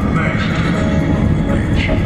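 Steady rumble of engine and tyre noise inside a moving car, heard from the cabin.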